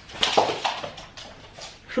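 A dog whimpering and yelping in a few short cries, mostly in the first second. He is scared because the household cat has gone after him.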